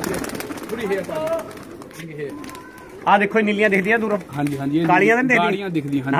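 A flock of domestic tippler pigeons cooing. A brief burst of sharp rustling comes at the very start, and a man's voice talks over the birds in the second half.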